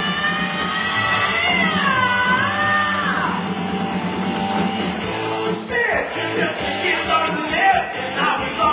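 A man singing amplified through a microphone over backing music, holding one long note that dips and rises in pitch for the first three seconds, then breaking into shorter phrases.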